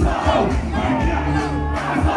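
Live gospel rap music over a PA system with strong bass, and a crowd close by shouting and cheering along.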